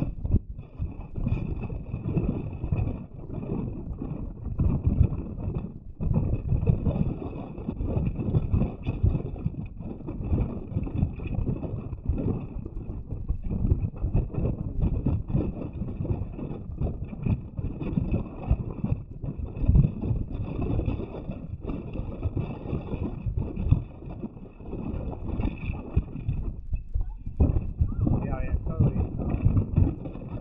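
Heavy surf crashing and washing over lava rocks, a continuous rough rush of water that surges and falls back with each wave.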